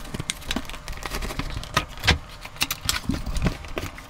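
A cardboard box being turned over and opened by hand: an irregular string of short knocks, scrapes and rustles of cardboard.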